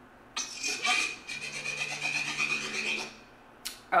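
Sound design from a music video's intro: a grainy, pulsing rasp with a steady high tone and a low hum under it. It fades out and is followed by a short click near the end.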